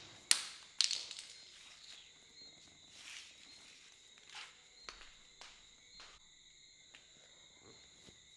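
Two sharp knocks close together near the start, then a few softer clicks, as a person moves about on a leather sofa, over faint crickets chirping steadily.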